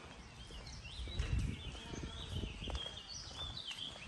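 Songbirds in a tree chirping, a series of short, high chirps throughout, over a low rumbling noise that swells during the first half.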